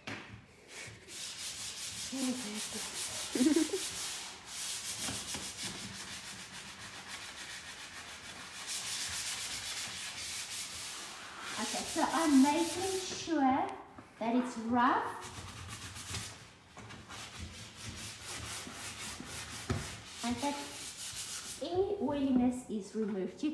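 100-grit sandpaper rubbed quickly back and forth over a plastic wheelie bin: a raspy hiss of fast strokes, scuffing the plastic rough to take off its oily coating before painting. A voice sounds briefly a little past halfway, as the sanding fades out.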